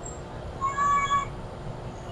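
A cat meowing once: a short, high-pitched call about half a second long.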